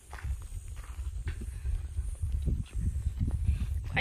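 Wind buffeting the microphone in an uneven low rumble that starts abruptly, with footsteps on a dirt road.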